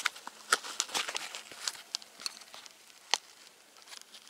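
Scattered plastic clicks and scrapes from a Bianchi UM84 military holster being handled as its belt clip is worked out from the bottom of the holster body, with one sharper click about three seconds in.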